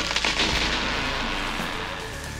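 A noisy crash-and-rumble sound effect, with a few sharp cracks at the start, fading slowly away.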